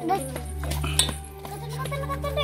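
Children's voices calling out briefly, over a steady low drone, with a sharp click about halfway through.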